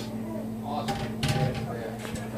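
Indistinct household talk, with a couple of sharp knocks about a second in, like dishes set down on a countertop, over a steady low hum.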